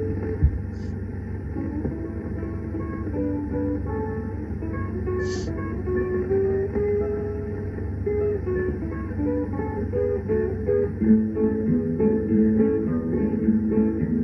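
Guitar playing a melody of single notes on an old 1936 film soundtrack, with a thin, dull sound and a steady low hum beneath it. A short thump about half a second in.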